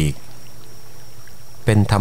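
Spoken narration in Thai breaks off for about a second and a half and then resumes; through the pause a soft, steady background bed carries on underneath.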